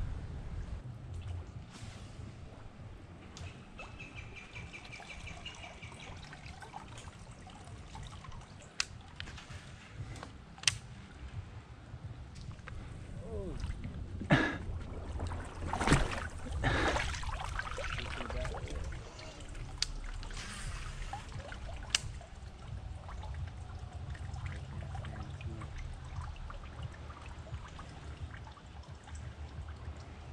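River water trickling and sloshing around an angler wading in the current, with a steady low rumble. A few sharp clicks fall through it, and there is a louder stretch of sloshing in the middle.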